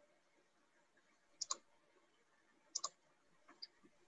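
Faint sharp clicks in near silence: a quick double click, another double click about a second and a half later, then a couple of lighter clicks near the end.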